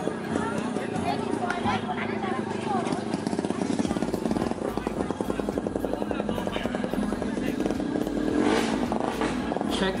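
Background voices with a motorcycle engine running in a fast, even pulse.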